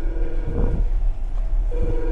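Samyung marine VHF radio sounding its DSC incoming-call alarm: a two-note electronic beep about a second long, a break, then the next beep near the end. This marks a DSC ship call received from the other VHF during the loop test, over a steady low rumble.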